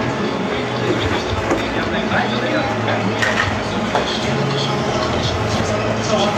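Indistinct voices and general bustle with scattered small clatters, under a low steady hum.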